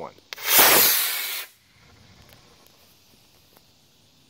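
C6-5 black-powder model rocket motor igniting and lifting off: a brief click, then a loud rushing hiss of about a second that dies away as the rocket climbs.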